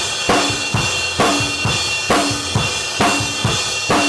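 Drum kit played in a steady rock groove: bass drum and snare hits under a constant wash of cymbals, with a strong accent about once a second. The kit is a late-1960s Rogers Holiday with a Gretsch Bell Brass snare.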